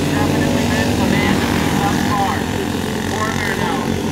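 A pack of racing go-kart engines droning steadily, their pitch shifting up and down as the karts run through the turn.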